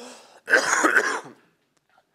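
A man's brief non-speech vocal sound, one loud burst of about a second, heard through a close microphone.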